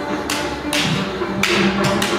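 Live music holding a sustained low note, with four short, sharp slaps and swishes of dancers' bare feet on the stage floor.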